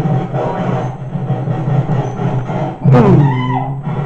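Cartoon soundtrack music playing from a television set, heard through the room. A voice briefly joins about three seconds in.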